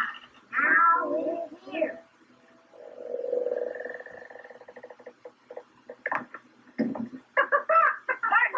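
A door creaks open in one long, buzzing creak of about two seconds, followed by a few sharp knocks; children's voices are heard before and after it.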